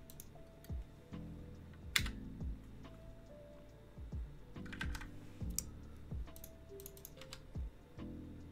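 Typing on a computer keyboard, keystrokes coming in short irregular bursts, over soft background music with sustained low notes.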